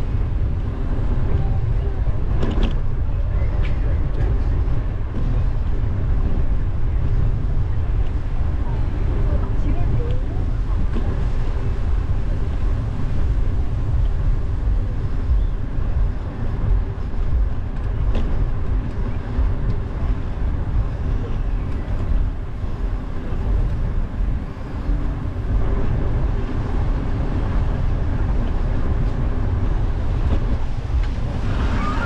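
Steady low rumble of wind buffeting a GoPro Hero 10 Black's microphone as a bicycle rides along, with a short knock about two and a half seconds in.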